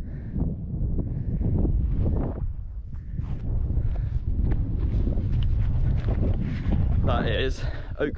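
Wind buffeting a handheld camera's microphone, a steady low rumble, with a runner's footfalls on moorland grass. A man's voice comes in briefly near the end.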